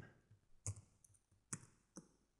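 Three faint computer keyboard clicks, spaced irregularly, over near silence.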